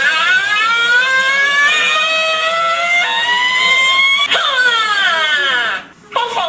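A high-pitched, cry-like voice holds long slowly rising notes for about four seconds, then glides down in a falling wail in the last second and a half.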